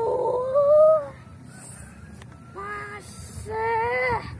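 A child's high-pitched, wordless cheer that rises in pitch over about a second, followed by two short vocal calls near the end.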